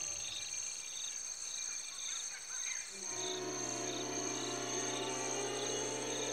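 Cricket-like insect chorus of a steady high trill with evenly repeating chirps. About three seconds in, a sustained low music drone joins it.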